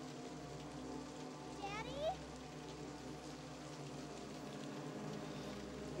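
Quiet film soundtrack: a low sustained drone over a steady hiss like rain. A child's voice calls briefly, rising in pitch, about two seconds in.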